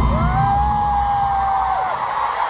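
Concert crowd cheering, with one close voice holding a long high-pitched scream that rises at the start and drops off near the end. Loud music with heavy bass runs under it and cuts out just before the end, as the song finishes.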